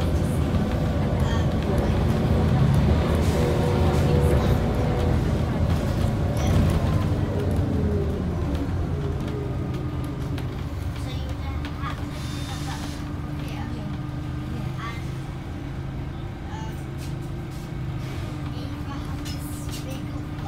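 Scania OmniCity single-deck bus heard from inside the passenger cabin, its engine running under way; the engine note drops in pitch and loudness from about six to ten seconds in as the bus slows, then settles to a lower steady hum. A brief hiss comes a little past halfway.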